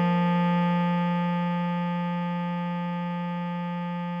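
Bass clarinet holding one long note, written G4 and sounding F3, with a steady tone that slowly gets quieter.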